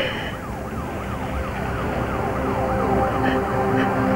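Emergency vehicle siren in a fast yelp, rising and falling about three to four times a second. In the second half, low sustained music notes come in under it.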